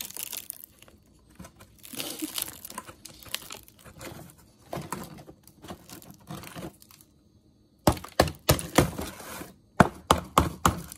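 The hard, over-cooked crust of sticky rice cooked in bamboo crackles as fingers break and peel it off the bamboo, in several bursts. Near the end comes a quick run of sharp, loud cracks. The crust is 'hard as rock' after about two hours of cooking instead of one.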